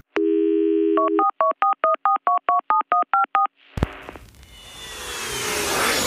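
Telephone dial tone for about a second, then a quick run of about a dozen touch-tone dialing beeps. After a short silence comes a click, then a rising whoosh that grows steadily louder, leading into electronic music.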